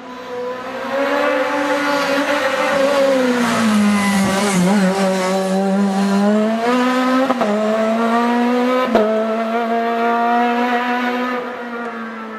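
Sports prototype race car engine running at high revs as the car climbs through a bend. Its pitch dips and rises, with sharp gear changes about seven and nine seconds in, and the sound fades near the end as the car moves away.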